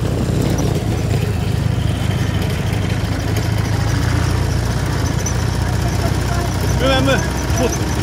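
Motorcycle engine running steadily at low revs, heard from on board while riding, with a noisy rumble over it.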